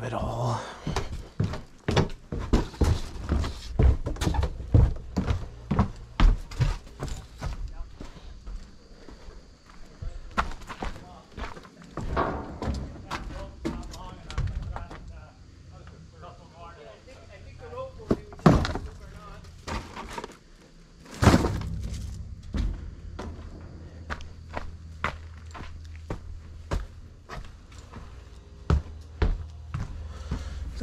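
Footsteps and a run of irregular thuds and knocks as boxes of junk are carried down the stairs of an old house and out to a steel dumpster bin. Two loud crashes come a little past halfway.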